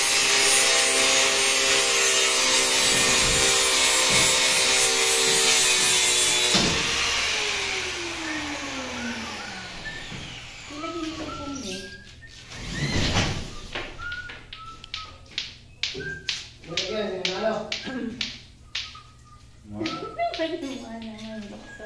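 A small handheld angle grinder with a cutting disc cuts through a white ceiling board, a loud, steady whining cut lasting about six seconds. The grinder is then switched off, and its whine falls in pitch as the disc spins down. Voices and light knocks follow.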